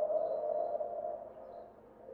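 A pause in a man's amplified discourse: the tail of his last word rings on as a steady tone through the microphones, PA and hall, and fades away to near silence.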